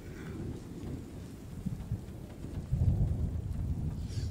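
Rain falling on a car, with a low rumble that swells about three seconds in.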